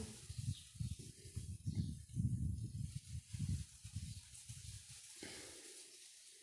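Paintbrush working paint on a porcelain saucer over a cloth-covered table: soft, irregular, muffled rubbing and dabbing that fades out about five seconds in.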